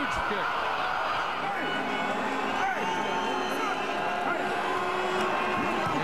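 Steady stadium crowd noise, a dense murmur of many voices.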